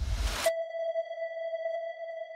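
Electronic sound design: a burst of noise that cuts off about half a second in, then a single steady synthesized tone that holds.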